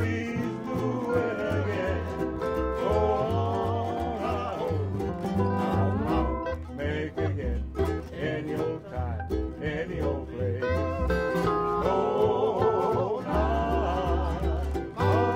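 Instrumental passage of a Hawaiian hula song played by a small string band: plucked guitar and ukulele-like strings over a steady walking bass line, with a wavering melody line.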